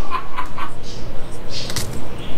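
A person's short breathy exhalations, a few in quick succession in the second half, without voiced pitch.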